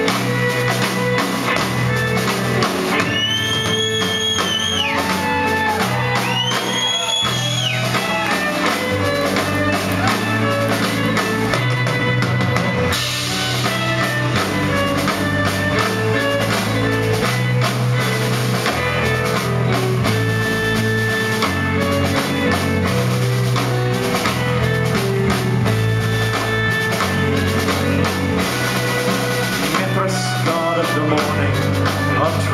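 Live band playing an instrumental passage: drum kit keeping a steady beat under electric guitar and bass, with a bowed violin carrying the melody. Two high sliding notes ring out about three and seven seconds in.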